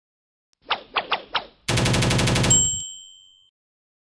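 Intro sound-effect sting: four sharp clacks, then a fast rattle lasting under a second, ending in a bright bell-like ding that rings out.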